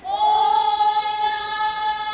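Young boys' voices chanting a Hawaiian hula kahiko chant, holding one long, level note that begins at once.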